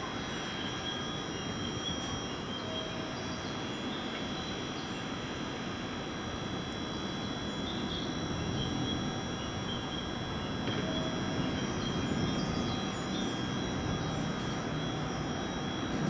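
Steady rumble of an electric commuter train at a station platform, with a steady high whine over it; the rumble swells a little past the middle.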